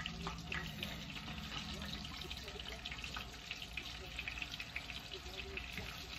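Chicken wings frying in hot oil in a wide pan, a steady dense sizzle with many small crackles as more pieces are laid into the grease.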